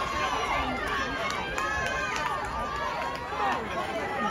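Track-meet spectators shouting and cheering, many voices overlapping at once.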